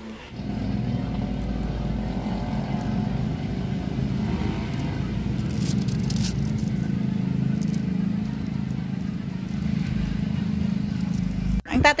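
A motor running with a steady low hum, cutting off suddenly just before the end.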